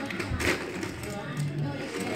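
Faint voices with background music, and a phone microphone rubbing against clothing, with a short knock about half a second in.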